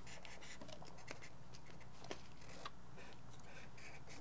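A marker drawing on paper: faint, scratchy strokes with a few soft ticks as the tip moves and lifts.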